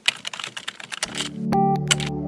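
Computer-keyboard typing sound effect, a fast run of key clicks. About a second in it gives way to synthesizer music with held chords and a stepping melody.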